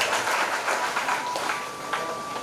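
Audience applauding: an even wash of clapping that grows a little quieter toward the end.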